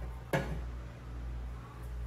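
A single knock of a small metal saucepan on the gas hob about a third of a second in, followed by a low steady hum.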